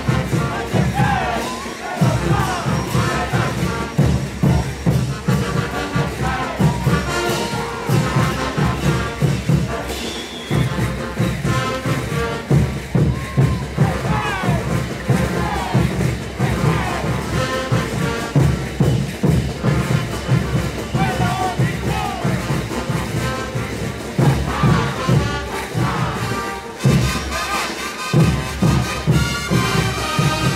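Brass band playing caporales music with a steady bass-drum beat, brief breaks in the beat a few times, and a crowd shouting along.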